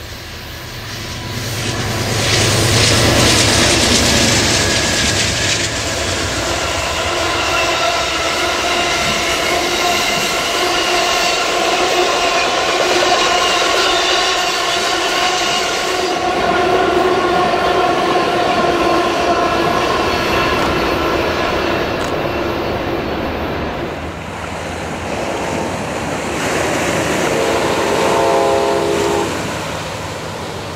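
An Amtrak Coast Starlight passenger train runs past on the coast line, its diesel locomotives and rolling wheels making a loud rumbling rush that builds about two seconds in. A long, steady multi-note train horn sounds over the passing train for many seconds. Near the end a shorter horn sounds again in broken blasts.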